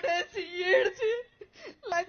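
A woman speaking while crying, her voice high and wavering in pitch, breaking off briefly a little before the end.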